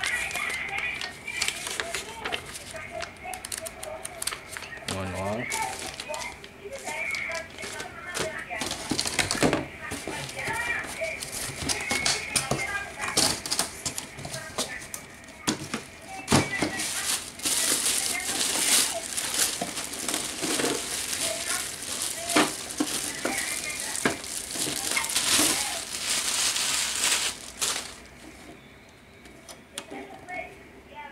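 Unpacking noise: paper leaflets rustling, a cardboard box scraping and knocking, and plastic wrapping crinkling. The crinkling is loudest in the second half and stops shortly before the end.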